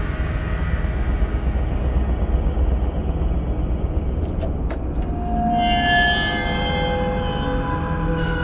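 Dark horror film score: a low rumbling drone, joined about five seconds in by several held higher tones, with a couple of short ticks just before they enter.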